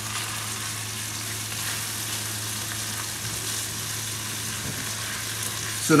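Ginger garlic paste frying in hot oil in a heavy cast-iron wok-shaped pan, a steady sizzle as it is stirred with a spatula. A steady low hum runs underneath.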